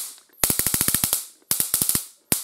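Homemade stun gun built around a cheap high-voltage arc generator module, firing: the arc snaps rapidly across its two electrodes in two short bursts, each under a second long, one about half a second in and one about a second and a half in.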